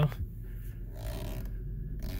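Light rustling and scraping from a handheld phone camera being moved and handled, over a low steady hum in the car's cabin.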